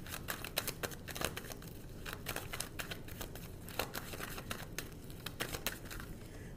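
Tarot cards shuffled by hand: a continuous, irregular run of quick soft clicks and rustles of card against card.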